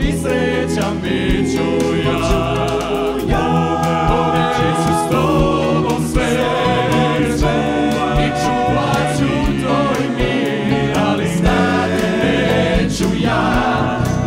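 Male vocal ensemble singing in multi-part close harmony, accompanied by a live band of keyboards, bass guitar and drums with a steady beat.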